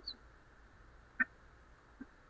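A lull in video-call audio: faint steady hiss with one short blip a little over a second in.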